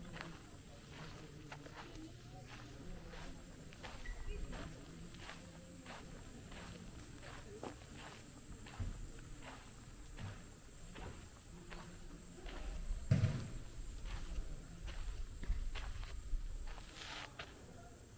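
Footsteps of someone walking at an unhurried pace on a sandy, packed-earth courtyard, about two steps a second. About two-thirds of the way through there is a low rumble with a thump.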